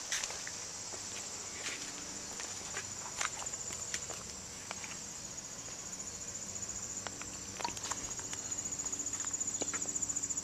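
A steady high-pitched insect trill that grows louder and pulses rapidly near the end, with scattered footsteps and small knocks as someone walks over grass.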